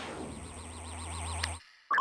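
Cartoon sound effect: a steady low hum under a warbling, wavering tone, which cuts off suddenly about one and a half seconds in. After a brief silence, a descending stepped tone begins right at the end.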